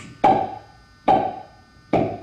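Beatboxed percussion: three deep, hollow mouth-made hits at an even pace of about one a second, each ringing out briefly.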